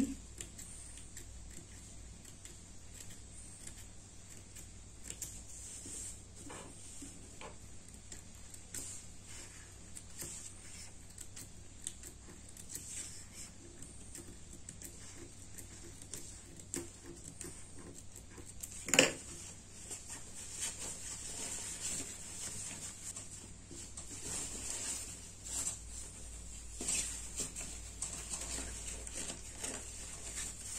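Faint rustling and handling of cotton fabric at a sewing machine, with scattered light clicks and one sharper click past the middle, over a steady low hum.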